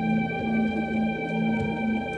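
Electronic keyboard played four-handed: a low note repeated about twice a second under steady held higher notes, in a slow, dramatic improvised piece.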